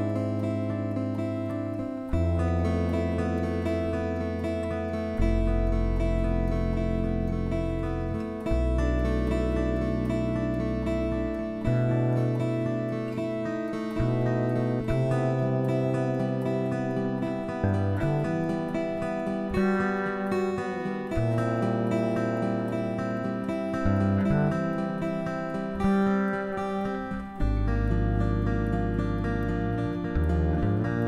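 Recorded acoustic guitar trio music: plucked guitar notes over long, held low notes that change pitch every two to three seconds.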